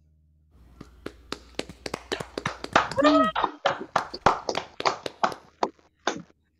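Hand clapping from a few people after a song, a run of sharp irregular claps several a second starting about half a second in, with one voice calling out on a falling pitch midway.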